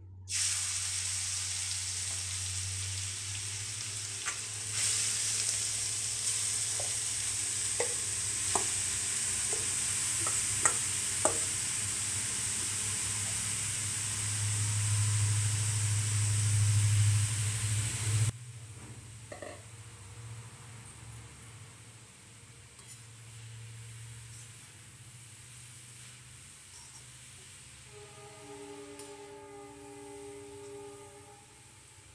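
Grated carrot sizzling in hot ghee in a metal kadhai, with sharp clinks of a metal slotted spoon stirring against the pan. The loud sizzle stops suddenly about two-thirds of the way through, leaving quieter stirring.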